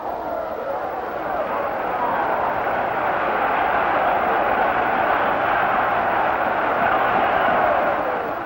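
Large stadium crowd cheering during a football play, the noise building through the middle and easing off near the end.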